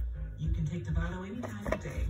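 A television playing in the room: music with voices from a programme or advert.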